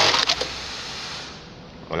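Electronic bartacking machine ending a stitch cycle while tacking a belt loop onto denim jeans: its dense stitching noise stops about half a second in with a click, then a softer noise fades away.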